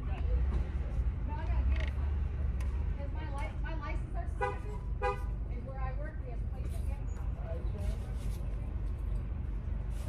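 A car engine idling, heard inside the cabin as a steady low rumble.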